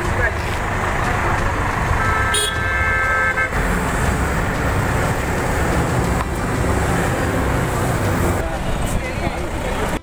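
Road traffic rumbling past, with vehicle engines and tyres, and a vehicle horn sounding once for about a second and a half, about two seconds in.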